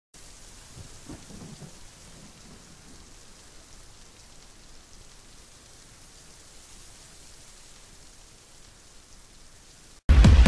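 Quiet, steady rain with a low rumble of thunder about a second in that fades by two seconds.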